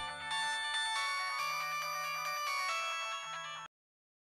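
Mobile phone playing a melodic ringtone, cut off suddenly near the end as the call is answered.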